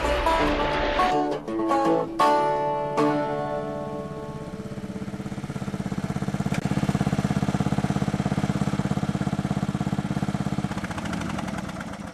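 Plucked-string music ending on a final chord about three seconds in, followed by a riding lawn mower's engine running steadily, growing louder as the mower approaches and fading near the end.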